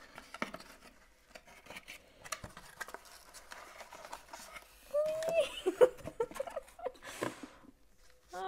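A cardboard mailer box being opened by hand, with flaps lifted and a wrapped item and its paper handled: a run of cardboard clicks, scrapes and paper rustles, busiest about five seconds in.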